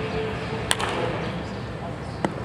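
A wooden baseball bat striking a pitched ball in batting practice: one sharp crack about two-thirds of a second in.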